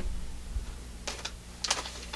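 A few light clicks in two pairs, about a second and a second and a half in, made by hands working equipment at the desk, over a low steady hum.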